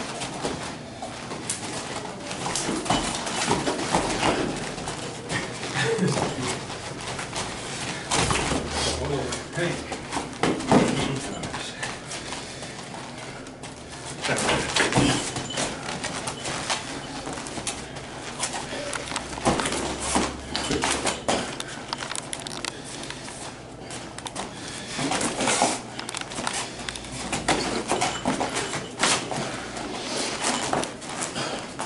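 Two people sparring light-contact kung fu: irregular footsteps and scuffs on foam mats and occasional light strikes, with short vocal sounds from the fighters.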